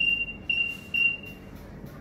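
Zebra DS9908R barcode scanner giving its decode beep: three short high beeps in quick succession in the first second and a half, one for each barcode read.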